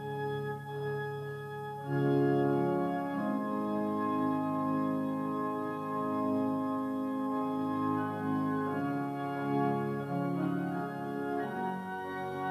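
Organ playing slow, sustained chords that change every second or two, with a fuller, louder chord coming in about two seconds in.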